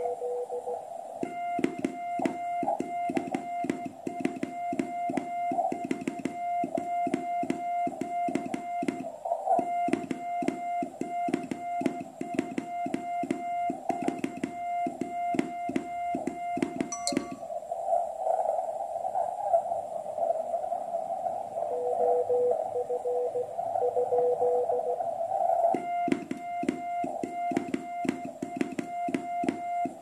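QCX QRP transceiver sending Morse code (CW) at 2 watts: keyed beeps in dots and dashes with a rapid clicking. Past the middle the sending stops for several seconds of receiver hiss with a faint Morse signal in it, then the sending resumes near the end.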